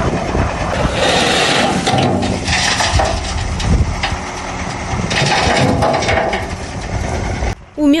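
Diesel dump truck engine running as the truck tips its load of soil and construction waste, a rough, uneven noise that swells and eases.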